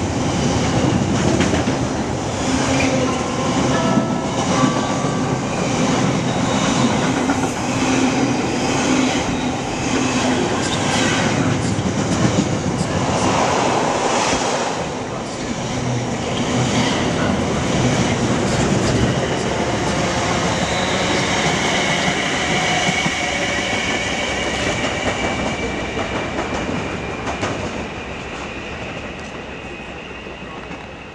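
A long container freight train passes close by, its wagons' wheels clacking over the rail joints in a steady rhythm. A thin high-pitched tone joins in about two-thirds of the way through, and the sound fades near the end as the last wagons go by.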